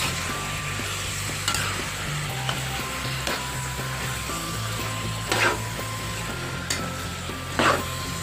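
Cubes of raw pork sizzling in a hot pan as they are sautéed, with a spatula stirring and knocking against the pan several times, most sharply about five and a half and seven and a half seconds in.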